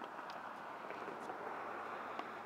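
Steady outdoor background noise with a few faint taps.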